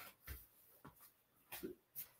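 Near silence, with a few faint, short soft knocks and rustles of movement on a foam floor mat.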